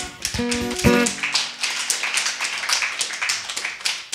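The last strummed chords of an acoustic guitar ring out briefly. From about a second in, a small audience applauds, a dense patter of claps.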